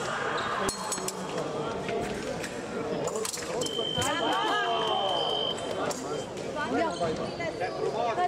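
Electric épée scoring machine sounding one steady high beep for about two seconds as a touch registers, with voices from the hall and a few sharp clicks around it.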